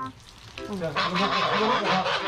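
White domestic geese hissing, the hiss starting suddenly about a second in, over lower goose calls.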